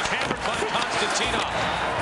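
Ice hockey game audio: arena crowd noise and voices, with several sharp thuds of impacts.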